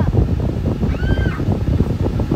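Steady low rumble of a car's air-conditioning fan inside the cabin, with one short high squeak about a second in that rises and falls in pitch.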